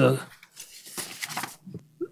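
Sheets of paper rustling and shuffling as pages are handled, coming in scattered short bursts after a brief spoken "uh".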